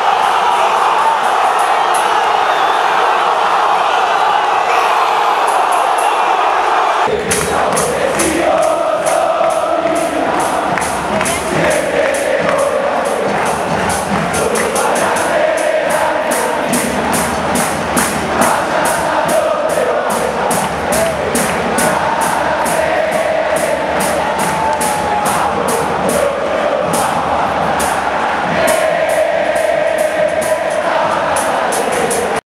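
Large football crowd singing a chant in unison. About seven seconds in, a steady rhythmic beat of drums and claps joins the singing and keeps time to the end.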